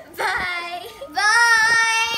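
Young girls singing in a drawn-out voice: two long held notes, the second one louder, starting about a second in.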